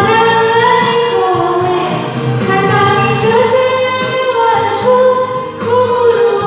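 A woman singing a pop ballad through a karaoke microphone over a recorded backing track, with long held notes.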